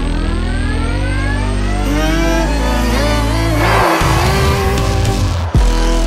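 Porsche Gen3 Formula E car's electric drivetrain whining and rising steadily in pitch as it accelerates away, with a brief rush of noise about halfway through. Electronic music with a steady bass plays underneath.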